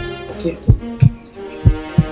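Heartbeat sound effect, a double thump about once a second, over sustained suspense music.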